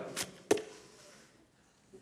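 A faint click, then a single sharp knock about half a second in that dies away to near silence.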